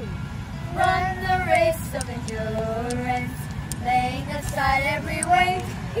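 A woman and children singing a Christian song together, their phrases starting about a second in.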